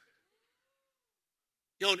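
Near silence in a pause between a man's words, with a man's voice resuming in German near the end.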